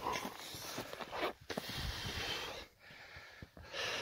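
A person breathing heavily close to the microphone, a few long breaths of about a second each.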